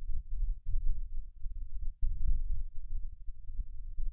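A low, uneven muffled rumble with no voice, dipping briefly twice.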